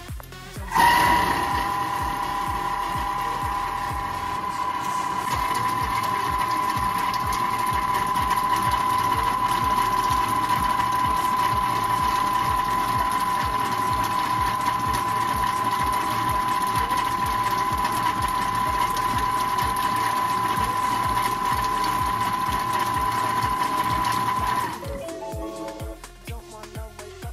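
Thermomix food processor motor running steadily at speed 5, its blade blending toasted sesame seeds with oil into tahini: a steady whine that starts about a second in and stops shortly before the end.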